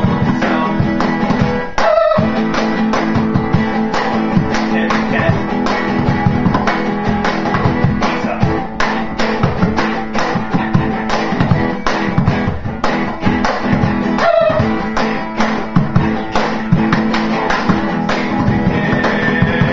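Acoustic guitar strummed in a steady rhythm, with a cajón slapped by hand to keep the beat.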